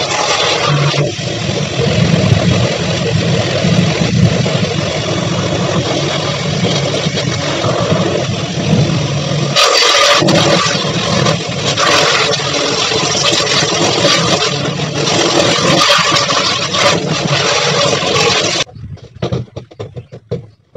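Pressure washer running steadily, its pump motor humming under the hiss of the water jet hitting a plastic front-load washing machine drum. It cuts off suddenly near the end.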